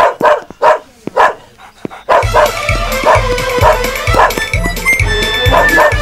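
A dog barking: four loud, short barks in quick succession. Film music with a steady beat comes in about two seconds in.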